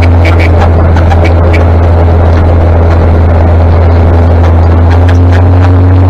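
A 1959 Daimler Ferret armoured scout car's engine and drivetrain, heard from on board, running at a steady low road speed. It is a loud, constant drone, with a few light rattling clicks in the first second and a half.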